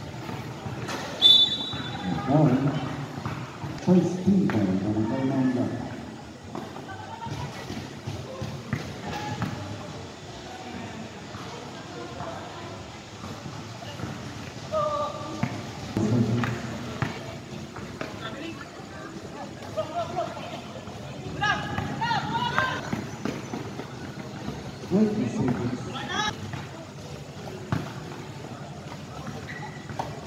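Live sound of a basketball game: players and onlookers calling out over the play, with the ball bouncing on the court.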